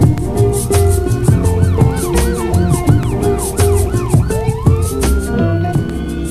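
Instrumental background music with a steady drum beat and bass line. Over it, a high wavering tone swoops up and down a few times a second, then rises in one long glide about four seconds in and holds, slowly sinking.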